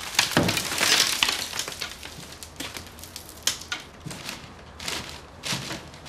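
Ceiling plaster and debris breaking away and falling, a dense crackling clatter for the first couple of seconds, then scattered smaller knocks and clicks.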